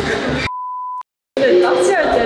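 A censor bleep: one steady, pure beep tone of about half a second, starting half a second in, with all other audio muted under it, followed by a short gap of dead silence before talking resumes.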